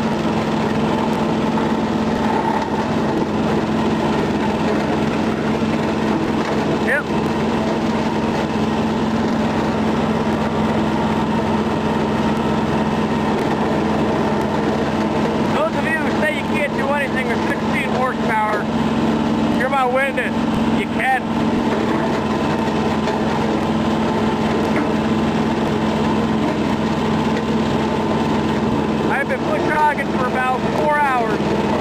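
John Deere 650 compact tractor's small three-cylinder diesel running steadily under load, driving a rotary cutter through dense brush. Brief wavering high-pitched squeaks come through partway through and again near the end.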